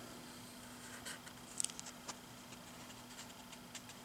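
Faint rustling and a few light ticks of a comic book's paper pages being handled and turned, over a steady low hum.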